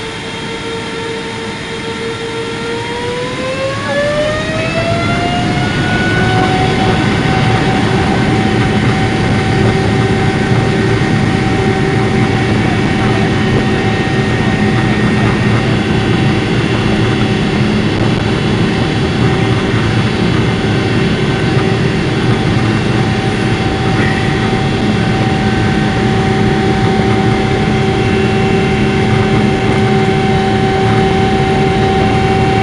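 Airliner's jet engines spooling up to takeoff thrust, heard inside the cabin. A whine rises in pitch and grows louder over the first few seconds, then holds steady over a rumble through the takeoff roll and climb-out.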